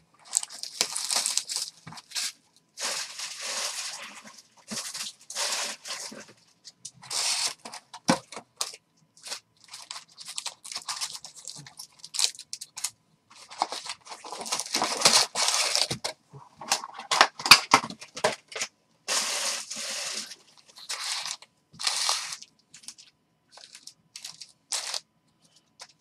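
A cardboard trading-card box being torn open and its foil-wrapped packs handled: repeated irregular bursts of tearing and crinkling packaging, with the busiest stretch past the middle.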